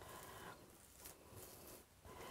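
Near silence, with faint soft strokes of a spatula spreading batter in a cast-iron skillet.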